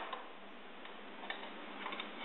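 A few faint light clicks as a small hand fiddles with a quad bike's rear drive chain and sprocket, over a steady background hiss.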